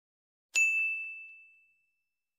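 A single bell 'ding' notification sound effect: one bright, high ring struck about half a second in that fades away over about a second.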